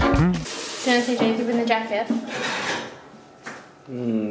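Background music cuts off about half a second in. Then a voice and a light clatter of dishes and cutlery follow, with a few sharp clicks near the end.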